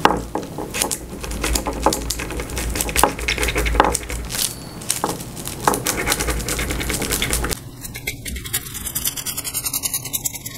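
A tracing wheel rolled along a pattern line over dressmaker's tracing paper on a table, transferring the line, giving a scratchy run of clicks and ticks. About seven and a half seconds in, the sound changes to a quicker, finer ticking.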